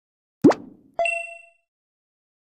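End-card animation sound effects: a quick pop that sweeps upward in pitch about half a second in, then a short bright ding that rings briefly and fades.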